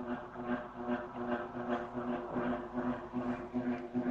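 A low steady hum with faint background noise: room tone between spoken sentences.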